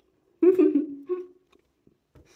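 A woman's voice: a short, pleased "mmm" with her mouth closed on a bite of pastry, lasting about a second.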